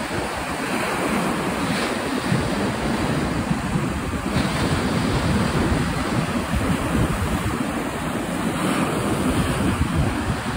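Wind buffeting the microphone in uneven gusts, over a steady rush of sea surf breaking on the beach.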